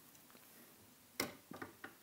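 Metal parts of a Pearl Eliminator double bass drum pedal clicking as the beater assembly is worked loose by hand. After a quiet first second there is one sharp click, then three lighter clicks.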